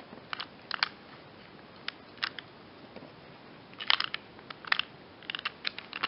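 Irregular clicks and light knocks from the opened-up gearbox and plastic housing of an old Black & Decker jigsaw being handled by hand, some in quick little clusters. The gears are being worked by finger.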